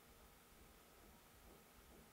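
Near silence: faint room tone and microphone hiss.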